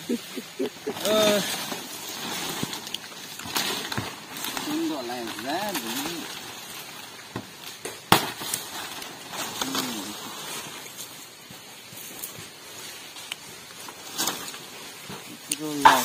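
Machete chopping at the stalks of toko fan-palm leaves: a few sharp chops spaced several seconds apart, over rustling of palm fronds and undergrowth. Short stretches of talk come in between.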